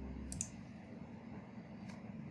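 Two computer mouse clicks, one shortly after the start and one near the end, over a faint low hum that cuts off about half a second in.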